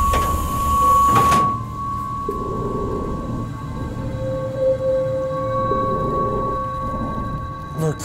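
Sci-fi film soundtrack: a rumbling noise that swells and cuts off suddenly about a second and a half in, over held electronic drone tones that carry on, with a lower tone coming and going in the second half. A voice starts at the very end.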